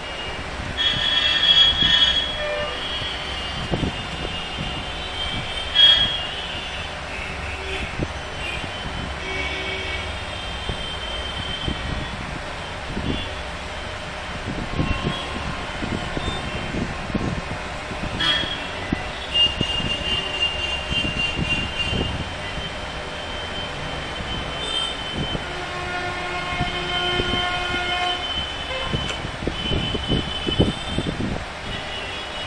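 Steady background rumble of vehicle traffic, with long high-pitched squealing tones that come and go over it.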